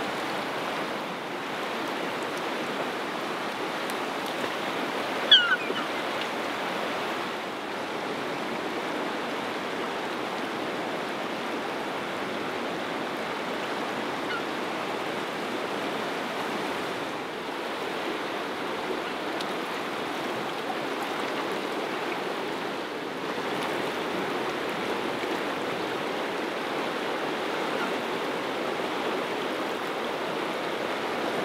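A fast-flowing river rushing steadily over its stony bed. About five seconds in, a gull gives one short, high call that rises above the water.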